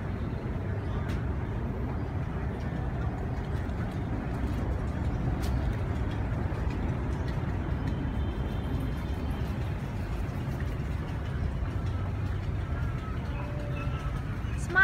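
A steady low rumble of outdoor background noise holds at an even level throughout.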